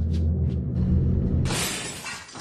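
Logo sting: a low, steady synthesized drone with a couple of sharp clicks, then, about one and a half seconds in, a sudden burst of noise that fades out.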